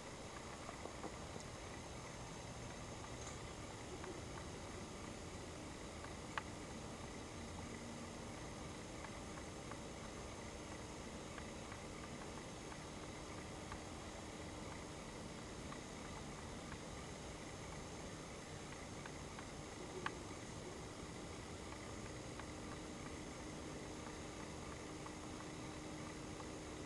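Faint, steady background hiss with two soft clicks, about six and twenty seconds in. A faint low steady hum comes in about halfway through.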